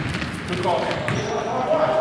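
Men's basketball game on a hardwood gym court: players calling out indistinctly while sneakers run on the floor and a basketball bounces.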